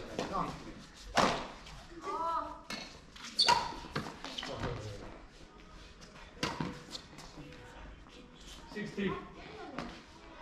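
Badminton rackets striking a shuttlecock in a rally: a series of sharp smacks at irregular intervals, the loudest about a second in and midway, echoing in a large sports hall.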